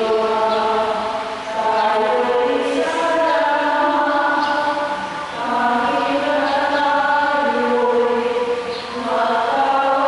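Church singers sing a slow, chant-like hymn in long held notes, moving from note to note without a break.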